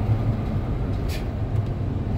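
Steady low rumble of a car's engine and road noise heard inside the cabin while driving, with a short hiss about a second in.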